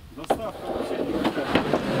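Corrugated asbestos-cement slate roofing sheets scraping and rubbing against each other as they are pulled out of a van and stacked, with a few light knocks; a short spoken word comes just after the start.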